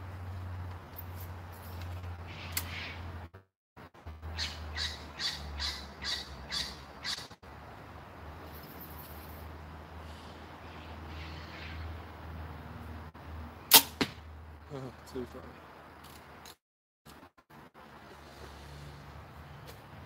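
A compound bow shot: one sharp, loud snap of the string on release about fourteen seconds in.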